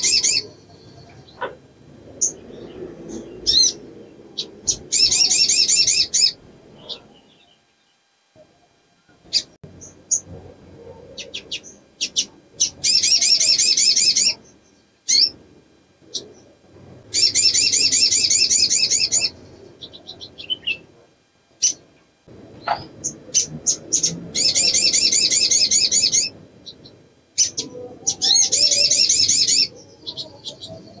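Female olive-backed sunbird (sogon) in a cage giving bursts of high, rapid trilled song, each about two seconds long, five times, with short sharp chirps between. It is a female in breeding condition calling for a male.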